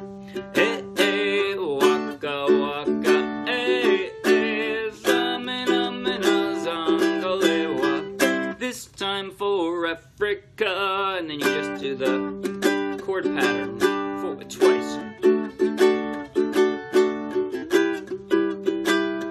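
Ukulele strummed chord by chord in a steady rhythm, with sharp percussive strum strokes, as a man sings along with a wavering voice. The strumming drops away briefly near the middle, then resumes.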